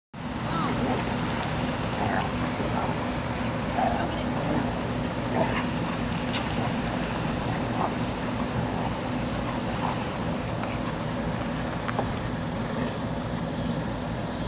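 Dogs giving short, scattered yips and barks in play, every second or two, over a steady low mechanical hum.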